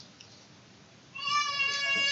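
A high-pitched squeal, steady in pitch, starting about a second in and lasting over a second.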